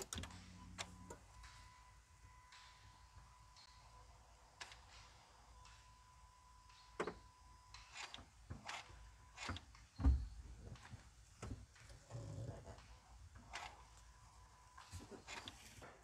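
Electronic throttle body on a Mazda 2's 1.5-litre petrol engine, ignition on and engine off, its flap driven open and shut as the accelerator pedal is pressed: faint clicks and knocks with a thin steady whine for about the first ten seconds. A dull thump comes about ten seconds in.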